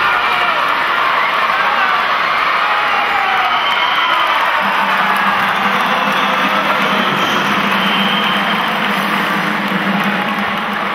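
Large crowd of spectators in an indoor arena cheering and chanting, many voices at once at a steady loud level; a low steady tone joins about halfway through and holds.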